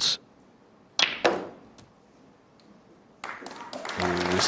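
A snooker cue tip strikes the cue ball with a sharp click about a second in, followed by a fainter knock of ball on ball. Near the end the audience begins to applaud as the red goes in.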